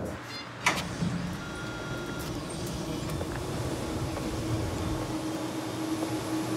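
A single sharp click, then the steady whir of data-centre cooling and ventilation fans, with a low steady hum coming in about halfway through.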